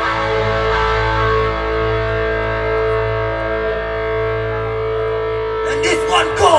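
Distorted electric guitar and bass holding one sustained chord that rings on steadily through a live PA, as a rock song ends; a voice comes in near the end.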